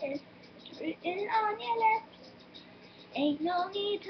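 A girl singing two short phrases, the first about a second in and the second near the end, with a short pause between them. Under the singing runs a steady low buzz from a running laundry machine.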